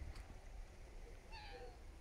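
A faint, short domestic cat meow about one and a half seconds in, falling slightly in pitch.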